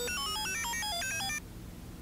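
A short electronic jingle: a quick run of clean, beeping notes stepping up and down for about a second and a half, then cutting off suddenly.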